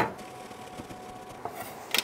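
A single sharp knock at the start as a ball of Oaxaca cheese is set down on a wooden cutting board, then quiet. Near the end, a few quick scraping strokes of a metal box grater shredding the cheese.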